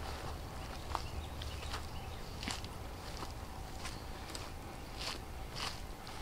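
Footsteps walking through tall grass and weeds, soft steps about every three-quarters of a second.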